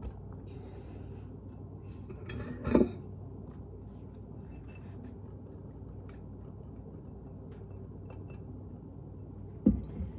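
Spatula scraping butter out of a ceramic dish into a stainless steel mixing bowl, with light scrapes and clinks. There is a louder knock about three seconds in and another near the end.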